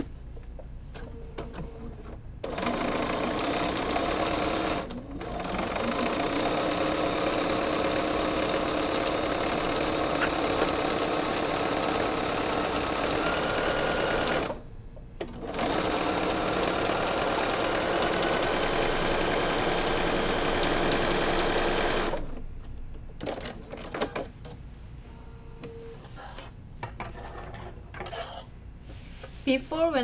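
Bernina sewing machine stitching straight quilting lines through a batting-backed fabric panel. It runs steadily for about twelve seconds with a brief dip, stops for about a second, then runs again for about seven seconds before stopping. Before and after the stitching there are quieter clicks and rustles of fabric being handled.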